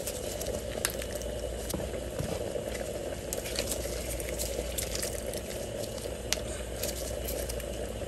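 Steady low rushing background noise, with a few faint clicks and taps from a plastic hand-held lime squeezer being worked and lifted away.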